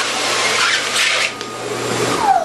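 Dyson Airblade hand dryer running, its high-speed air jet blowing as a loud steady rush with a low hum underneath. Newspaper held in the slot rustles and flaps in the airflow.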